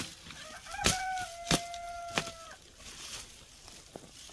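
A rooster crowing once, a single call of about two seconds that rises and then holds a long, level note. Three sharp knocks about two-thirds of a second apart fall across the crow and are louder than it.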